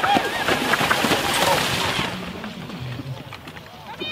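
A single pony's hooves and the wheels of its marathon carriage splashing through shallow water, a dense churning of water that fades out after about two seconds.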